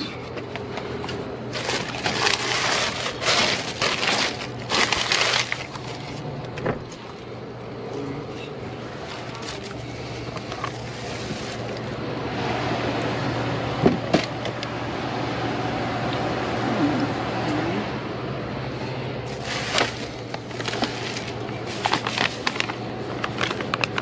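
Plastic bags and packaging crinkling and rustling as gloved hands dig through trash in a dumpster, in two spells of louder crackling early and late, with scattered knocks. A steady low hum runs underneath.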